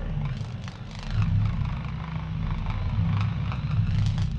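A low, steady mechanical rumble with its weight in the bass, swelling slightly about a second in, with faint clicks above it: a sound-effect drone at the end of the track.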